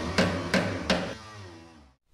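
The end of a rock music track: three last percussive hits in the first second, then the final chord rings out and fades away.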